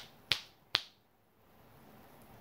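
Two sharp finger snaps made with the pinky, about half a second apart.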